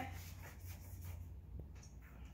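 Quiet room with a low steady hum and two or three faint small ticks.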